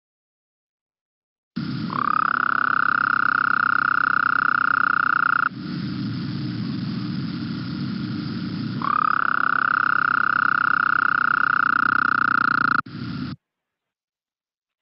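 Recorded Gulf Coast toad (Incilius nebulifer) breeding call: a long, low rattle, steady and trilled, given twice for about four seconds each with a short break of lower background noise between. The recording starts and stops abruptly.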